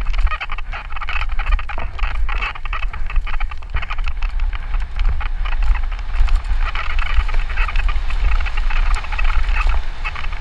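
Santa Cruz Nomad mountain bike descending dry dirt singletrack at speed. Heavy wind rumble on the microphone runs over a constant clatter of tyres on dirt and the bike rattling over bumps.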